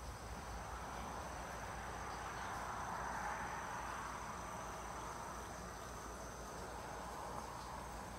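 Insects calling steadily in woodland: two thin high tones held throughout, over a broader hiss that swells about three seconds in and slowly fades.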